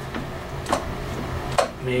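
Two sharp clicks about a second apart as the throttle of a 1994 Johnson 35/40 hp outboard is moved by hand to set a little throttle, over a low steady hum.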